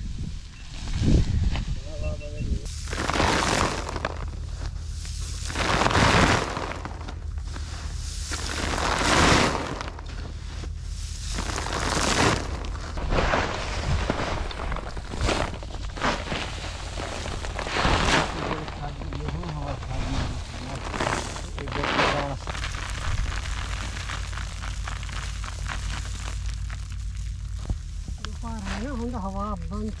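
Threshed wheat straw tossed into the air with a wooden winnowing fork, each toss a rustling rush of falling straw and chaff, repeating about every three seconds. Steady low wind rumble on the microphone throughout.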